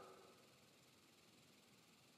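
Near silence: the previous sound fades out in the first moment, then nothing.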